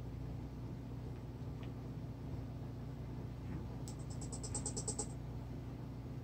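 Bench power supply under heavy load, feeding current into a shorted 15 V rail, with a faint steady low hum. About four seconds in comes a quick, even run of about a dozen light clicks, as its adjustment knob is turned up.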